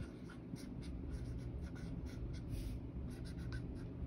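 Chisel-tip dry-erase marker writing on a whiteboard: a quick run of short, faint strokes as letters are drawn.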